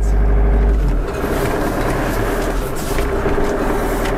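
Motorhome's engine and road noise heard inside the cab while driving, a steady drone with a deep rumble that eases about a second in.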